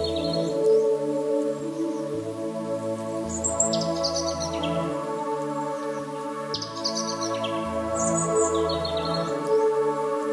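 Calm ambient background music of sustained chords over a slowly changing bass, with short bird chirps recurring every few seconds.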